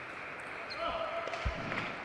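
Table tennis ball clicking off bat and table, then a player's shout as the point ends, held for about a second, with a dull thump partway through.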